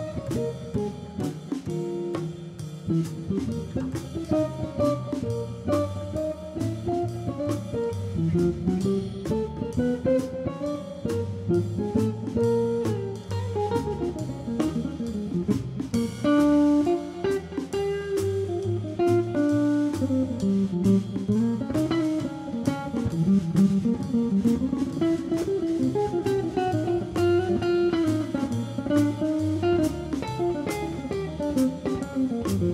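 Jazz guitar trio playing a blues: electric guitar carries a single-note melodic line over plucked upright bass and drum kit keeping time with steady cymbal strokes. A brighter cymbal crash comes about sixteen seconds in.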